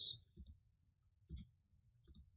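A few faint computer mouse clicks, short and spaced about a second apart.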